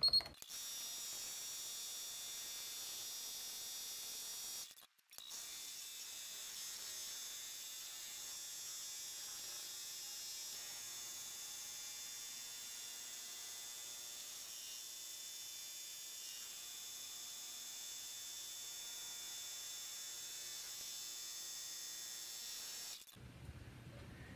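Multi-needle embroidery machine running steadily as it sews a satin-stitch edge, with a steady high whine over the stitching noise.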